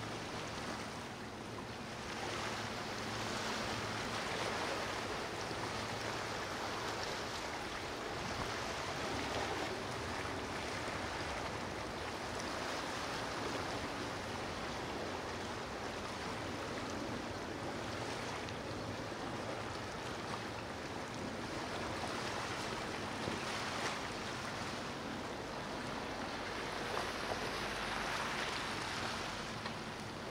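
Steady rushing and churning of water from a motor yacht's wake and surf in the inlet, with a low engine hum underneath.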